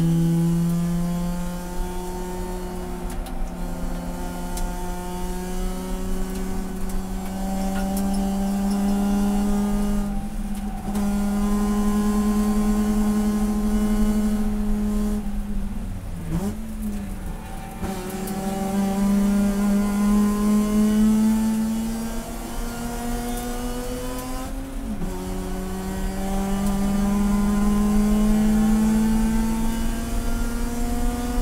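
Race car's rotary engine heard from inside the cabin under hard acceleration. Its pitch climbs steadily through the gears, with upshifts about ten seconds in and again past the three-quarter mark. Around the middle it slows for a tight corner, with quick throttle blips on the downshifts, then accelerates again.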